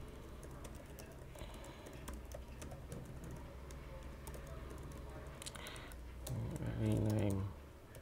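Typing on a computer keyboard: irregular keystroke clicks. About six seconds in comes a brief steady voiced hum lasting about a second, the loudest sound here.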